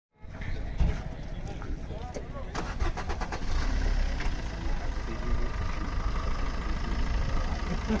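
Busy outdoor fairground ambience: a steady low rumble with background voices, and a quick run of sharp clicks about three seconds in.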